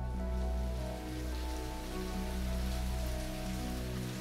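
Steady rain falling, a fine even hiss, over soft background music of long held chords.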